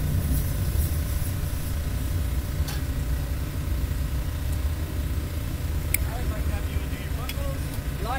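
Steady low rumble with a faint steady hum, like machinery running, broken by a few sharp clicks and faint voices near the end.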